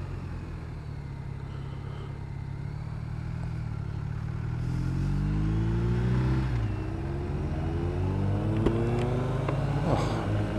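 BMW R1250 RT's boxer-twin engine running under way: its pitch climbs under acceleration from about four seconds in, drops sharply at an upshift at about six and a half seconds, then climbs again. A sharp tick sounds near the end.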